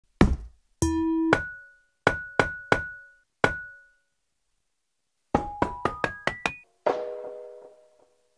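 Home-recorded foley percussion samples played back as music: a knock and a short low tone, then a metallic ping struck five times. A quick rising run of pitched struck notes follows, and near the end a ringing chord that slowly fades.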